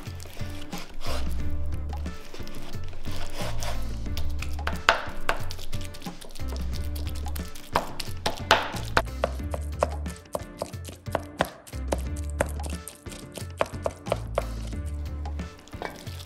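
A chef's knife chopping raw salmon on a wooden cutting board: a run of quick knocks of the blade on the board, coming fastest in the second half, over background music.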